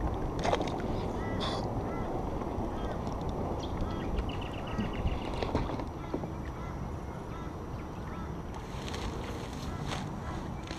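Outdoor ambience with a steady rushing noise, birds calling now and then, one of them in a quick repeated series about four seconds in, and a short knock about half a second in.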